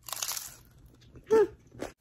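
A bite into a hard taco shell: a crisp crunch right at the start, then quieter chewing with a short voiced sound from the eater about a second and a half in.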